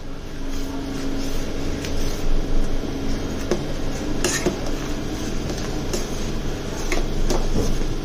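Steel ladle stirring a thick yogurt-based buttermilk curry in a stainless steel pot, with a few sharp clinks of metal on metal against the pot over a steady low hum. The curry is kept moving so the curd does not split from the heat.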